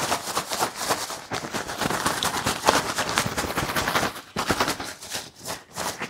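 Folded paper slips rattling and rustling inside a bag being shaken hard, a rapid run of crackles that thins out after about four seconds.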